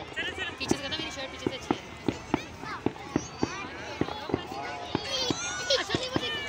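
Fireworks going off in a rapid, irregular string of sharp bangs and pops, about two or three a second, over a talking crowd.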